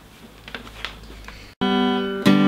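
Faint knocks and rustling of a guitar being handled, then, after an abrupt cut about one and a half seconds in, an acoustic guitar sounding one loud ringing note that slowly fades.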